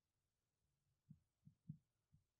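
Near silence: room tone with a few faint, short low thumps in the second half.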